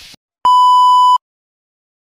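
A single steady electronic beep at one fixed pitch, lasting about three quarters of a second and cutting off suddenly.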